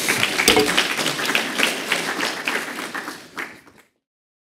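Audience applauding, a dense patter of many hands clapping that fades and then cuts off abruptly just before the end.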